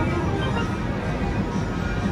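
Dancing Drums Explosion slot machine playing its free-games bonus music, a steady chiming tune, while the win meter rings up credits.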